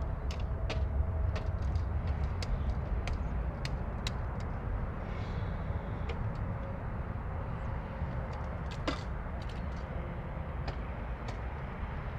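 C-17 Globemaster III's four turbofan engines on final approach, a steady distant low rumble, with scattered faint sharp clicks over it.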